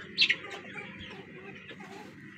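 A bird's single short, high call that falls in pitch about a quarter second in, followed by faint coop background.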